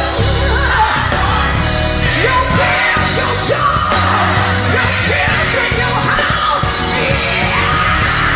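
Old-school gospel song playing, with a strong lead voice singing in long, bending phrases over a full band.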